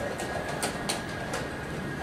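Playing-hall ambience of a chess tournament: a steady background hiss with a faint constant whine, and several sharp clicks scattered through it, typical of chess pieces being set down and clock buttons pressed at nearby boards.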